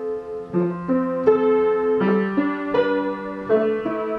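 Detuned upright piano played solo: a slow line of notes and chords, about two strikes a second, each note ringing on into the next.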